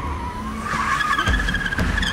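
Car tyres squealing as the car brakes hard to a stop. The wavering squeal jumps higher about two-thirds of a second in and carries on over a low rumble from the car.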